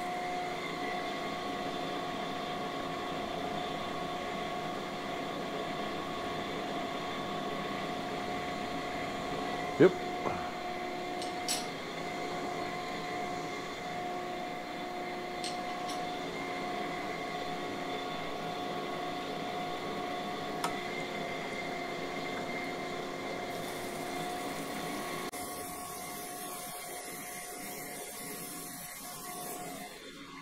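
Cam grinder running steadily while finish-grinding a main bearing journal on a Viper V10 camshaft under flowing coolant: a steady machine whine made of several fixed tones. It drops a little in level near the end.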